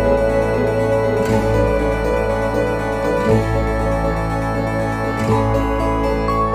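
Background music: sustained notes over a steady bass, with the chords changing about every two seconds.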